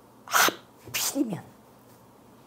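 A woman's two sharp, breathy vocal bursts close to the microphone, the second ending in a short voiced sound that falls in pitch.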